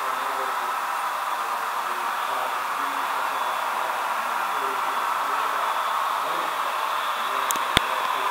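Steady hiss of model diesel locomotives running on the layout track, growing slightly louder as the train nears, with one sharp click near the end.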